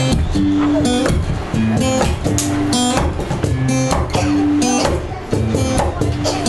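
Acoustic guitar strummed in a steady rhythm of chords, the instrumental opening of a song before the vocals come in.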